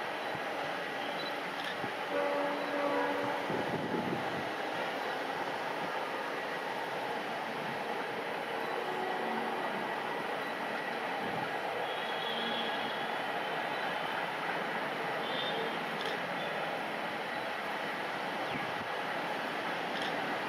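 ALCo WDM-3A diesel locomotive with its 16-cylinder ALCo 251 engine running steadily as it rolls slowly towards the camera on a curve. A short horn note sounds about two seconds in.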